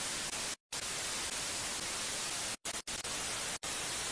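Analog TV static: a steady hiss of white noise, cut off for a moment by short dropouts about half a second in, twice around two and a half to three seconds, and again near three and a half seconds.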